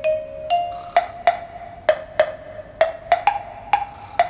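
Light background music of short, struck pitched notes with a run of sharp percussive taps, about two a second, through the middle.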